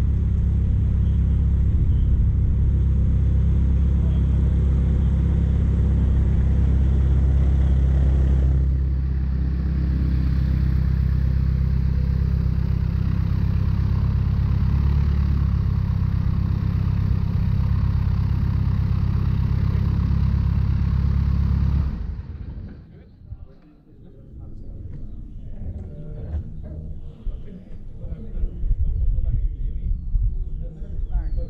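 Light aerobatic aircraft's piston engine idling on the ground with a steady low drone, then cutting off about 22 seconds in as the engine is shut down; after that, quieter scattered knocks and handling sounds.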